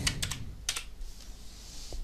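Computer keyboard being typed on: a quick run of several keystrokes in the first second.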